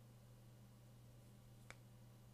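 Near silence: room tone with a steady low hum, broken once by a single short click about three-quarters of the way through.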